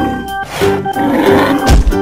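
Background music with an animal bellow sound effect laid over it, a bull's call.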